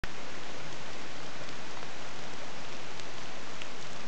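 Steady, even hiss of water, with a few faint ticks.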